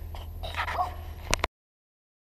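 Outdoor ambience with a steady low wind rumble on the microphone and a short high cry about half a second in. A sharp click comes just before the sound cuts off to silence.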